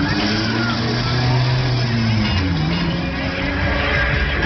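Loud fairground din beside a swinging thrill ride: amplified music with held bass notes that change pitch, mixed with the machinery noise of the rides and voices.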